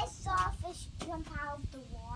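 A young child singing in a high voice, a few short sung notes.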